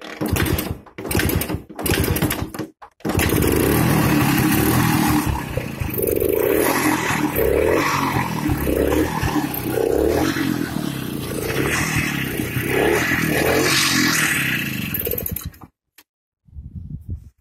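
Victoria KR 25 Aero's single-cylinder two-stroke engine on its first start-up: it fires in a few short bursts, catches about three seconds in and runs, revved up and down repeatedly on the throttle, then stops abruptly near the end.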